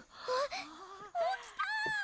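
High-pitched, excited children's voices from the anime soundtrack crying out in Japanese, the subtitled line "H-He's up!", with pitch sliding up and down.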